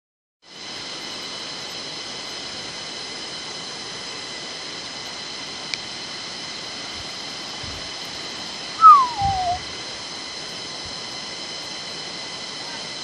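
Steady rushing hiss of the river in the gorge below, with a steady high-pitched drone over it. About nine seconds in, a short, loud falling call sounds once, with a low thump under it.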